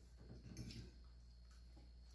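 Near silence: quiet room tone with a low hum, and a few faint clicks of cutlery on plates about half a second in.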